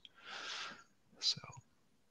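A soft breathy exhalation, then a quietly spoken "so" as the man trails off.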